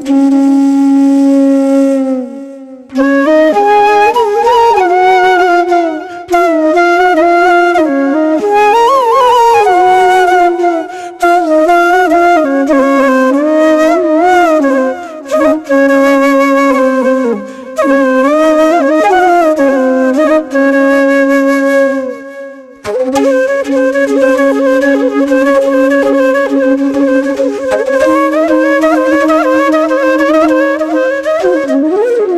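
Flute melody playing as background music, its notes sliding and bending between pitches, with brief breaks about two and a half seconds in and again about twenty-two seconds in.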